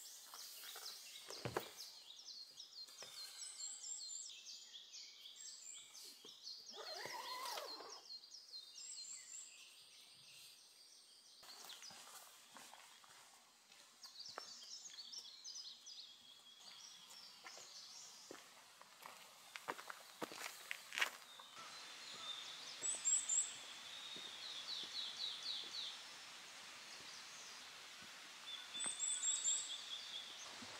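Several wild birds singing in woodland, with repeated high chirps and short rapid trills over faint outdoor ambience. A few soft knocks come through, one near the start and a couple about two-thirds of the way in.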